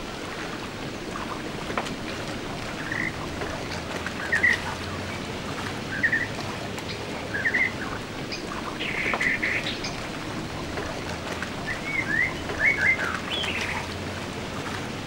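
A bird calling in short, high chirps that come in small groups every second or two, over a steady outdoor hiss.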